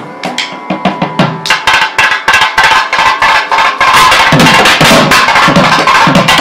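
A group of thavil drums played fast and together, with sharp finger-thimble strokes and stick beats. The drumming starts softer and builds, reaching full loudness about two-thirds of the way through.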